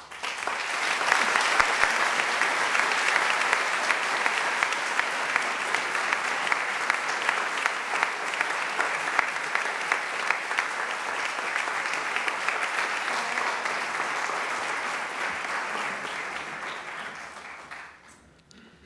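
Audience applauding: a steady spatter of many hands clapping that starts at once and slowly dies away near the end.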